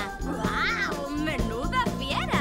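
A few high-pitched cartoon animal squeaks, each rising and falling in pitch, over soft background music with held notes.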